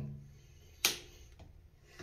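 A single sharp click a little under a second in, from the temperature handle of a thermostatic shower mixer being worked at its 38 °C safety stop, which only lets the handle turn further while its button is pressed.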